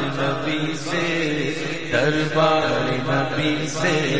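Male voice singing an Urdu naat, drawing out wavering melismatic notes over a steady low drone.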